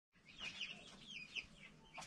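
Chickens clucking faintly: a few short, falling notes, after a brief moment of dead silence at the start.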